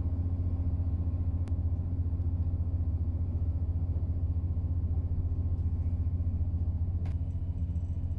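Inside a moving passenger train carriage: a steady low running rumble from the wheels and underfloor, with a steady hum over it. Two sharp clicks, about a second and a half in and near the end.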